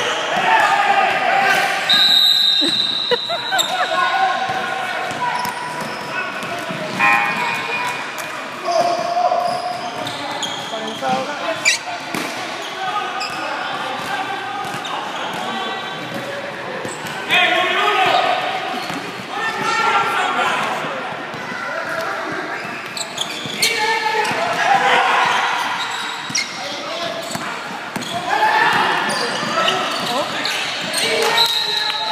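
Basketball game in a gym: the ball bouncing on the court among repeated sharp knocks, under continual spectator shouting and chatter, echoing in a large hall.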